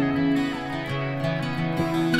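Instrumental music led by acoustic guitar: held chords ringing out, with a new chord struck near the end.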